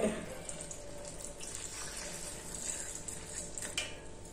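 Milk pouring from a steel tumbler into a steel mixer jar onto chopped banana: a faint, steady splashing trickle.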